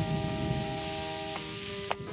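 Cartoon rain sound effect, a steady hiss of heavy rain, under a few held notes of background music, with a short click near the end.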